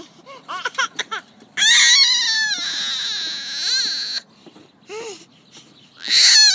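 A baby squealing in excitement. Short high squeaks come in the first second, then one long, loud, shrill squeal from about one and a half seconds in to four seconds, then a few brief sounds near the end.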